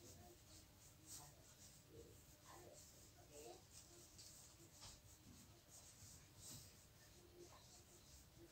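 Faint marker pen strokes on a whiteboard: irregular short scratches as a line of handwriting is written.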